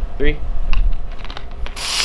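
Clicks and rubbing from hands working at the neck of a plastic Coke bottle. Near the end, a sudden loud fizzing hiss as the Mentos set off the soda and foam sprays out of the bottle.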